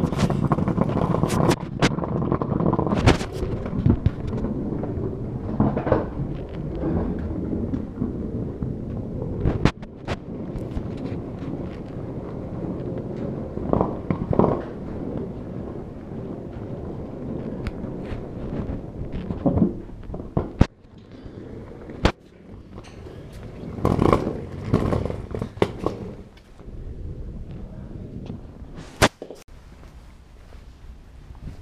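Handling noise from carrying bags and a camera on the move: a dense rumbling for about the first ten seconds, then scattered sharp knocks and bangs over a quieter background.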